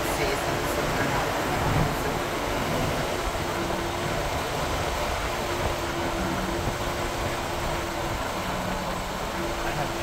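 Steady road and engine noise heard inside a moving car's cabin, with a low hum that fades in and out.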